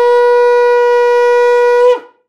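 Long twisted-horn shofar blown in one long, steady, loud blast on a single high note, which slides briefly downward and cuts off near the end.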